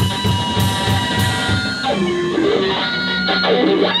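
A live rock band playing electric guitar, electric bass and drum kit. Just before halfway the drumming stops, leaving a wavering electric guitar line over a held bass note.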